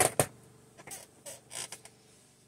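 Fabric-wrapped cardboard comic book board creaking and scraping as it is handled: two sharp sounds right at the start, then a few softer rubs.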